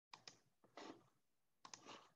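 Faint, irregular clicks and short tapping bursts: two sharp clicks at the start, a short burst just before the middle, and a cluster near the end.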